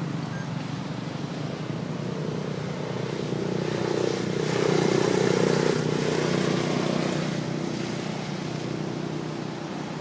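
A motor engine running steadily, growing louder about four to six seconds in and then easing off.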